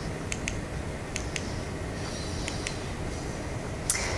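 Small sharp clicks in three close pairs, about a second apart, from a handheld presentation remote being pressed to change slides, over steady room noise.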